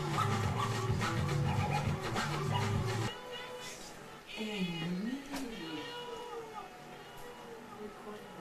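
Music with a steady bass line cuts off suddenly about three seconds in. Then a person's voice gives a long drawn-out call that dips and rises in pitch, followed by quieter vocal sounds.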